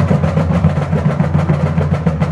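Marching band percussion opening a piece, loud: rapid, evenly spaced snare-drum strokes over a steady low sustained tone.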